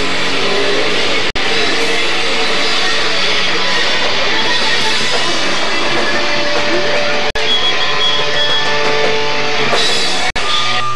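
Loud live rock band playing: electric guitars, bass and a drum kit going together. The sound drops out twice, very briefly, about a second in and again near seven seconds.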